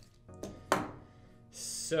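A metal multi-tool (Leatherman) set down on a table: one sharp clack with a short ring about three-quarters of a second in. A brief hiss follows near the end.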